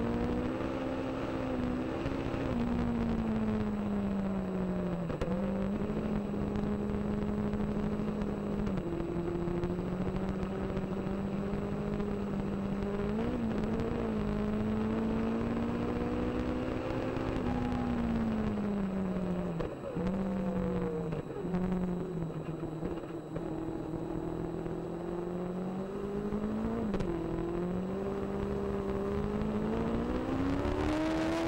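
Onboard sound of a Legend race car's Yamaha four-cylinder motorcycle engine running hard at speed, with wind and road noise. The pitch holds high, dips several times as the driver lifts and changes gear, and climbs again as he accelerates near the end.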